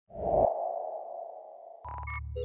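Intro sound effect: a sudden low hit with a ringing, sonar-like tone that fades away over about a second and a half. Music with a steady bass starts just before the end.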